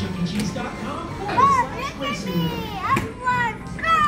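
Young children's high-pitched voices calling out in play, with background music playing.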